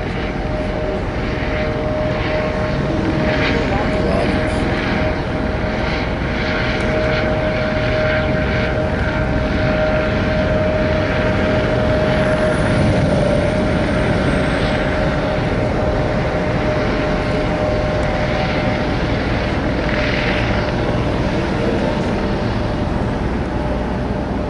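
A helicopter overhead: a steady, unbroken drone with a humming tone in it, under faint voices.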